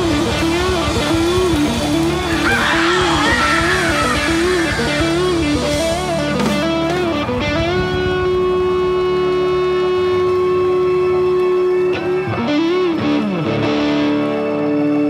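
Live rock band jamming: an electric guitar plays a repeating wavering lead figure over bass and drums, then holds one long sustained note from about halfway through, bending off near the end.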